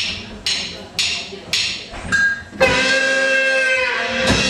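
Live band opening a tune: five sharp percussion strikes about two a second, like a count-in, then a long held note with rich overtones starting about two and a half seconds in.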